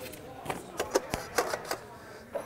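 Handling noise of a vertical-rod panic exit device as it is pulled from its box: about half a dozen light clicks and knocks of the metal bar and its parts.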